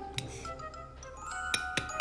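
Soundtrack music with steady held notes, over which a teaspoon taps the shell of a soft-boiled egg in an egg cup: a light tap early on, then three quick sharp taps near the end.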